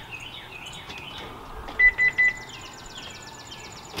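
Three short, loud electronic beeps at one steady pitch about two seconds in. Continual chirping birdsong runs underneath.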